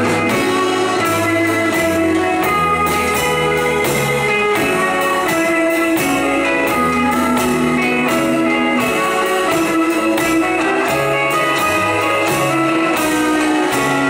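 Live rock band playing an instrumental passage: electric and acoustic guitars over bass and drums, with a steady drum beat and no vocals.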